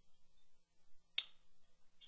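A very quiet pause with a faint steady hum, broken by one short, sharp click a little past a second in.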